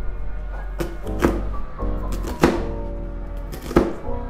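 Kitchen knife slicing an onion on a plastic cutting board: four separate knife knocks about a second apart, over steady background music.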